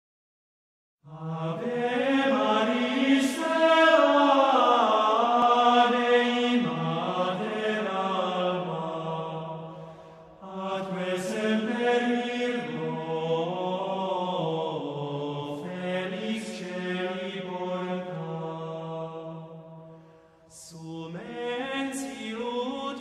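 Male vocal ensemble singing Gregorian chant unaccompanied in a church. It starts about a second in and runs as long phrases, with short breaks about ten seconds in and near the end.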